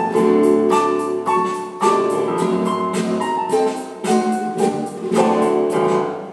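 Acoustic guitar strumming chords together with an electronic keyboard playing piano tones, a live duo bringing a song to its close; the last full chord is struck about five seconds in and left to ring.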